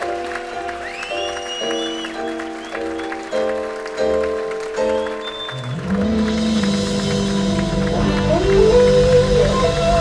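Live blues-rock band: a run of held chords, changing about every second, over a soft kick-drum pulse. About six seconds in, the whole band comes in louder, with electric guitar bending notes over bass and drums.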